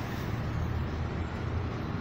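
Steady low background rumble of outdoor urban ambience, with no distinct events.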